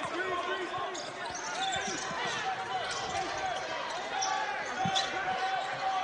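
Court sound of a basketball game: a ball being dribbled on the hardwood floor amid many short sneaker squeaks, with faint players' voices calling out.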